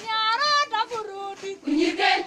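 Girls' voices singing a song together, the melody moving up and down in short gliding phrases.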